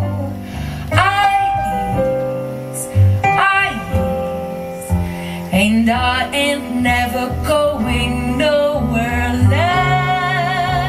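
Live jazz: a woman singing into a microphone, accompanied by electric keyboard and upright double bass.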